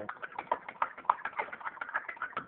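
A metal kitchen spoon stirring thick chocolate milk in a glass, clinking against the glass in a quick run of light taps, about seven a second.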